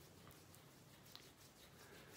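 Near silence: room tone, with one faint click a little past a second in.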